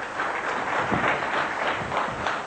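Audience applauding steadily in a hall as a guest is called up.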